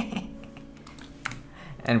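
A few computer keyboard key clicks, about three scattered over two seconds.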